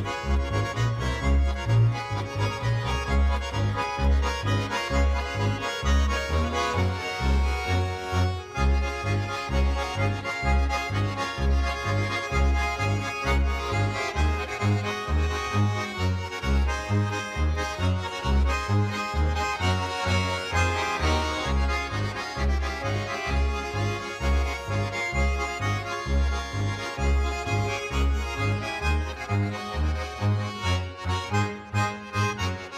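Swiss folk dance tune played on two button accordions with an upright bass, the bass giving a steady beat of low notes under the reeds.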